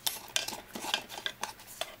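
A plastic spatula scraping and knocking around the inside of a stainless-steel food-processor bowl, working loose freshly ground powdered sugar: a quick, irregular run of short scrapes and clicks.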